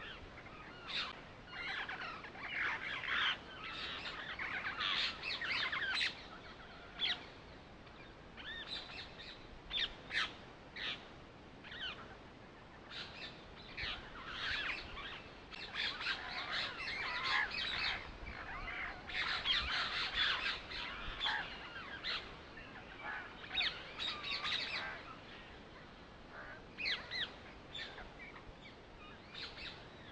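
Birds chirping and calling, dense runs of short high calls that come and go, with quieter gaps around 8 s and 26 s.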